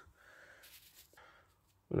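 Near silence with faint, indistinct handling noise, then a man's voice begins speaking at the very end.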